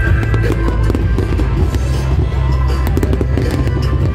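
Aerial fireworks bursting and crackling in a rapid scatter of sharp pops, over loud music with a steady heavy bass.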